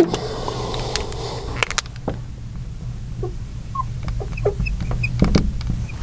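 Felt-tip marker squeaking in short, scattered chirps as it writes on a glass lightboard, with a few sharp clicks, over a steady low hum.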